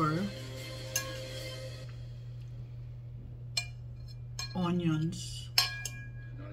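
Metal fork clinking against a ceramic plate while a salad is mixed on it: a few sharp clinks spaced a second or two apart.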